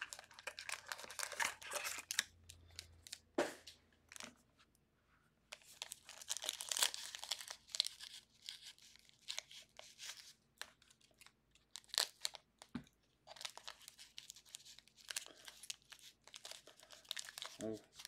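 Foil trading-card pack wrapper crinkling and tearing as it is opened by hand, in irregular crackly bursts with a brief pause about five seconds in.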